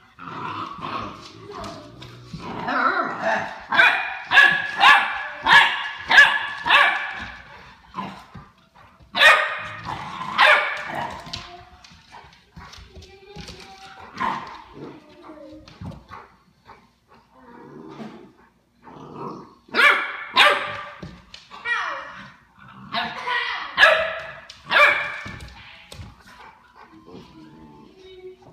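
A puppy's high-pitched play barks and yips, coming in several quick runs of rapid barks with quieter gaps between.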